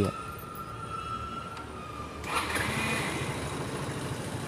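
Mahindra Duro scooter engine being started on the self-starter with a newly fitted one-way starter clutch. It runs steadily, then gets clearly louder about two seconds in. The grinding noise at self-start that came from the broken one-way clutch is gone.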